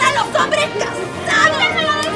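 Women's voices shrieking and crying out over one another during a scuffle on the floor, the cries high and wavering, growing busier about a second in.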